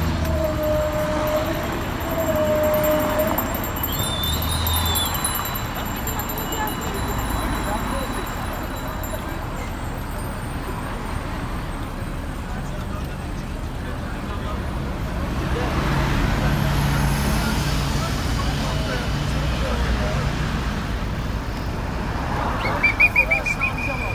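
Busy road ambience: steady motor traffic rumble with scattered voices from the passing crowd of cyclists, and a rapid high trilling ring about a second before the end.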